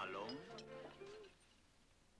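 A person's voice in a drawn-out, wavering exclamation whose pitch rises and falls. It dies away after about a second, leaving near silence.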